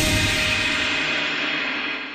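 The final chord of the music, ending on a cymbal crash that rings on and dies away steadily over about three seconds.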